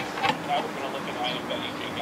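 Pliers working the stiff steel wire of a tomato cage, giving a couple of light metallic clicks in the first half.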